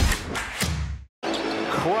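The tail of a short intro music sting fades out, then cuts off about a second in. After a brief silence, basketball game audio starts: arena crowd noise with a basketball bouncing on a hardwood court.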